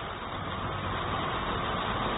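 Steady background rumble and hiss with no speech, growing slightly louder through the pause.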